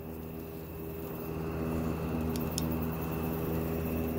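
Steady low mechanical hum made of several held tones, with a faint steady high tone above it. Two light clicks come about two and a half seconds in.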